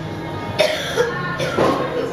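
Two short vocal bursts, about a second apart, over background music.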